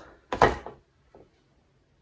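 Wooden squeegee pulled across an inked silk screen: one short, loud scrape about half a second in, followed by a faint knock.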